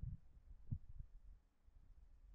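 A few soft, low thuds, three in the first second or so, over a faint low hum.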